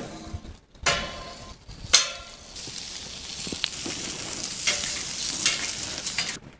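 Lamb chops sizzling on the hot steel grate of a charcoal grill; the sizzle builds from a little before halfway and then holds steady. A couple of sharp clicks sound in the first two seconds.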